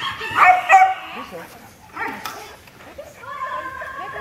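A dog barking while it runs an agility course: two sharp barks about half a second in, another about two seconds in, then a long, high, drawn-out call near the end.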